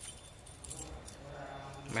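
A few faint light clicks and clinks over low background noise, then a man's low voice murmuring in the second half.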